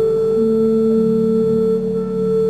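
Balbiani Vegezzi Bossi pipe organ holding slow sustained chords in pure, flute-like tones, with single notes changing inside the held chord.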